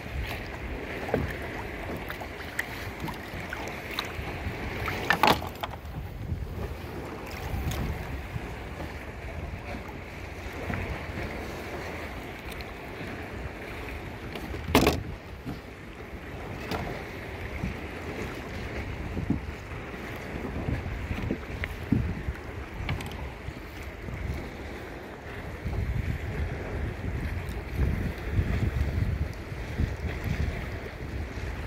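Water sloshing and splashing against a kayak's side as a fish is held in the water and released, with low wind rumble on the microphone that grows heavier near the end. Two sharp knocks stand out, about 5 and 15 seconds in.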